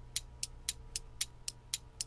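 A ticking-clock sound effect: quick, even ticks, about four a second, marking time while waiting, over a faint steady hum.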